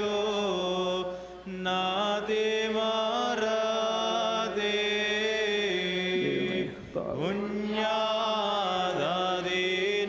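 Orthodox liturgical chant sung by a single voice on long held notes that glide slowly from one pitch to the next, with a brief break about seven seconds in.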